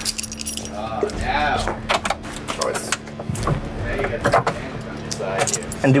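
Metal tools and hardware clinking and rattling in irregular clicks, over a steady hum.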